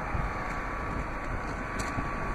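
Steady running hum of a remote-started Dodge Charger sitting still: its 3.6-litre Pentastar V6 idling, with the climate fan blowing, heard through the open driver's door.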